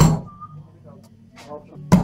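Impulse heat sealer's bar clacking shut on a plastic bag as it seals, with a second loud clack of the sealer just before the end. A steady low hum runs underneath.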